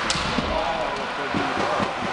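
Ice hockey game heard from the stands: spectators talking and calling out, with a sharp crack from play on the ice just after the start and lighter knocks about a second later.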